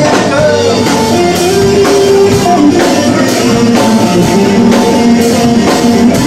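Live acoustic rock band playing an instrumental passage: strummed acoustic guitar, bass guitar and drum kit keeping a steady beat, with a line of long held notes over them and no singing.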